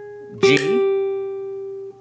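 Nylon-string classical guitar: a single G on the high E string, third fret, is plucked about half a second in and rings on steadily. It sounds over the fading tail of the previous note, and a man's voice names the note as it is struck.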